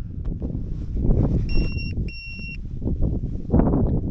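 Wind buffeting the microphone in uneven gusts. About a second and a half in, two identical steady electronic beeps sound, each about half a second long, with a short gap between them.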